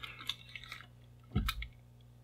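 Faint small clicks and rustling as multimeter test probes and their leads are handled over a circuit board, with one short sharper tick about one and a half seconds in.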